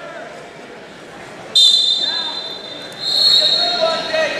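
A referee's whistle blown twice: a sudden, high, steady blast about a second and a half in that dies away, then a longer blast from about three seconds in. Voices in the gym sit underneath.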